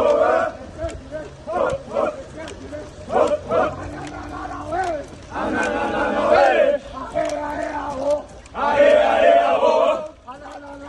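A group of men chanting and shouting a military running cadence together as they jog. Shorter calls give way to long, loud group shouts about halfway through and again near the end.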